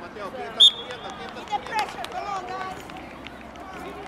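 Voices of players and spectators calling out across an open field, with one short, sharp referee's whistle blast about half a second in and a single knock near the two-second mark.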